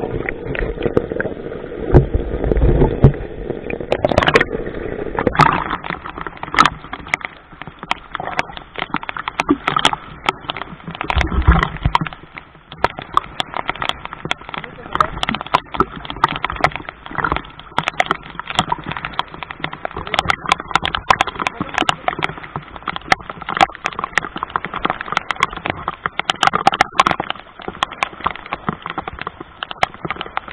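Rain and sea water splashing, heard through a waterproof action-camera housing: a dense, irregular run of sharp crackling clicks throughout. Low rumbling water and handling noise in the first few seconds, while the camera is under the water.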